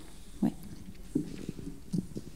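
A handheld microphone handled and set down on a table: a couple of brief soft knocks in a quiet room, after a short spoken 'ouais'.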